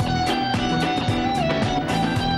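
Live band music: a lead guitar holds one long high note that dips briefly in pitch and comes back about two-thirds of the way through, over bass and drums keeping a steady, quick beat.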